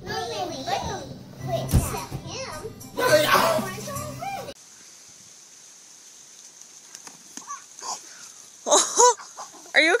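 A toddler's high voice babbling and squealing, with one sharp thump about two seconds in. Near the end comes a short high-pitched cry from a boy falling off a slackline.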